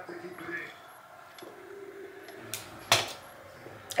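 A woman's quiet closed-mouth hum while sipping from a drink can, with two sharp clicks or taps about two and a half and three seconds in; the second click is the loudest sound.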